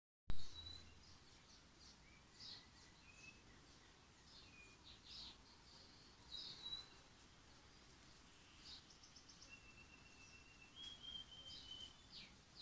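Birds chirping and calling in the background: many short chirps, with a longer, steady whistled note near the end. A single sharp click right at the start is the loudest sound.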